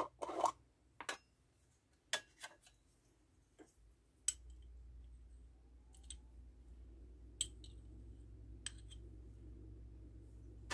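Scattered light clicks and scrapes of a glass jar being unscrewed and a metal measuring spoon scooping mustard out against the glass. A low steady hum comes in about four seconds in.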